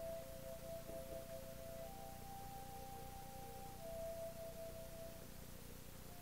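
Faint music from a film's soundtrack playing in the room, made of a few long held notes that change pitch twice, over a low steady hum.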